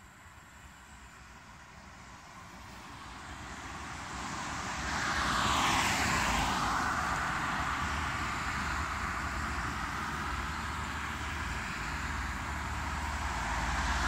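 Road vehicle approaching and passing close by, its tyre and engine noise building for about five seconds to a peak and falling in pitch as it goes past. Steady traffic noise carries on afterwards and rises again near the end.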